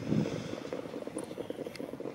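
Many overlapping hoofbeats of a field of trotters pulling sulkies over a sand track, a dense, irregular clatter at moderate level.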